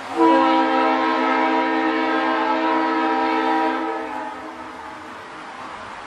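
A train horn sounding one long blast of several tones at once, starting abruptly and fading out about four seconds in.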